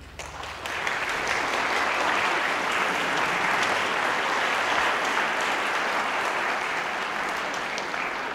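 Audience applauding in a concert hall, building over the first second and then holding steady.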